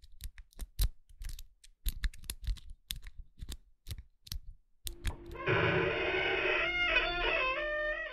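A run of irregular sharp clicks, then bagpipes start up about five seconds in: a steady drone under stepping chanter notes, sliding down in pitch near the end as the pipes die away.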